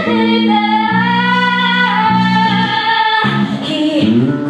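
Live amateur rock band: a female vocalist sings long held notes into a microphone, backed by electric bass and drums. The voice holds two sustained high notes, then drops lower near the end.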